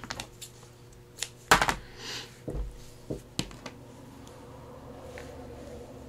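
Twine being cut with scissors: a sharp snip about a second and a half in, then a few light handling clicks and a soft thump on the table.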